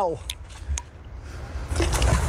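A couple of faint clicks, then a short splash near the end as a fishing magnet on its rope lands in the canal.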